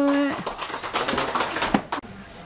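A woman's held sung note from a Mường folk song ends a moment in. It is followed by a rapid patter of short clicks mixed with brief voices.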